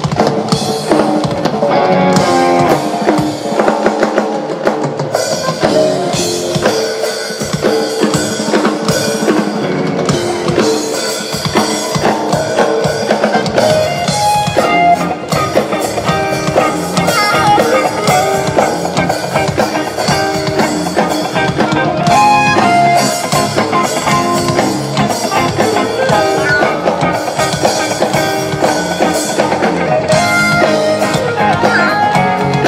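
A live rock-style band playing steadily: drum kit with bass drum and snare, electric guitars and keyboard.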